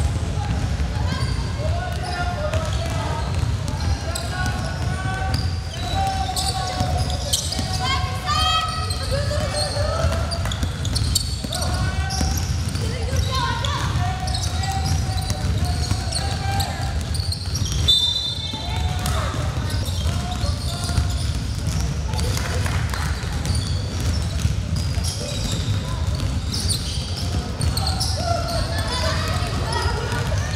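Sound of a basketball game on a hardwood gym court: players' voices calling out over one another, a basketball bouncing and sneakers squeaking, over a steady low rumble. A brief high squeak or whistle sounds a little over halfway through.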